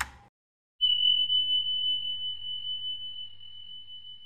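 Outro subscribe-button sound effects: a short click right at the start, then a single high steady tone that begins just under a second in and slowly fades.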